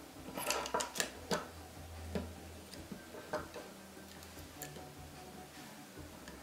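Small plastic and metal parts of a Canon Speedlite 600EX-RT flash head clicking and rattling as they are handled and the flash tube assembly is worked loose from its white plastic housing. A quick run of sharp clicks in the first second and a half, then a few single clicks.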